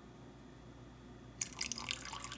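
A thin stream of lime juice, squeezed by hand, trickles and splashes into a pot of water. It starts suddenly about one and a half seconds in, after faint room tone.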